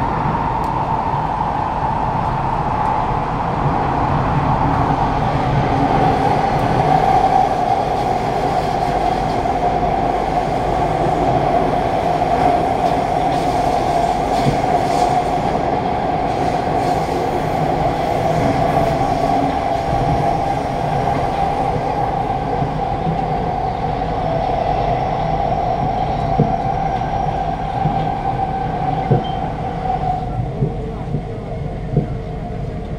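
A Kawasaki–CRRC Qingdao Sifang C151A MRT train running at speed, heard from inside the carriage: a steady rumble of wheels on rail with a constant whine. A few sharp clicks come near the end.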